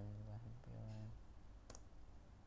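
Two quiet, drawn-out hesitation sounds from a man's voice, then a single sharp click of a computer mouse button near the end.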